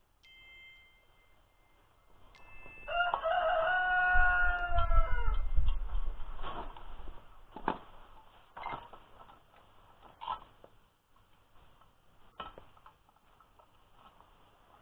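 A rooster crows once, a long pitched call starting about three seconds in. After it come a few scattered sharp metal clinks from hand work on the rotary mower's discs and knife fittings.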